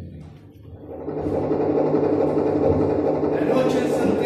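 Dense, buzzing electronic noise through a PA swells up about a second in and holds loud over a steady low drone, with a bright hissing flare near the end.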